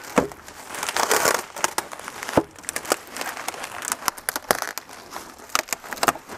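Bubble wrap and plastic sheeting crinkling and rustling as they are handled, with many irregular sharp crackles and a denser burst of rustling about a second in.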